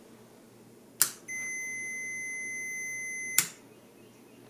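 An antique Singer industrial sewing machine lamp switch clicks on about a second in, and a multimeter's continuity beeper then sounds one steady high tone for about two seconds until a second click of the switch cuts it off. The beep shows that the switch contacts close the circuit, so the switch is good.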